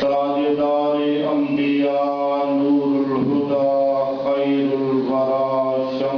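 A man's voice chanting a melodic religious recitation into a microphone, in long held notes that step up and down in pitch, with short breaths between phrases.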